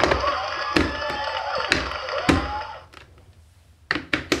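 Electronic tune and sound effects from a VTech Marble Rush light-and-sound barrel piece, with four plastic knocks as the piece is handled. The electronic sound stops about three quarters of the way in, and a few light plastic clicks follow near the end.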